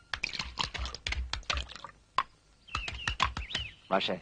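A run of light, irregular clicks and taps, with a few short chirping sounds a little before three seconds in.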